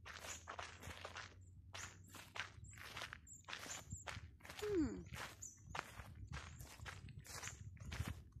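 Footsteps walking along a path, about two steps a second. A short falling tone is heard about halfway through, the loudest sound.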